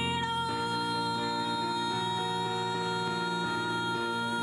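A singer holding one long, steady note in a musical-theatre song, with keyboard chords changing beneath it.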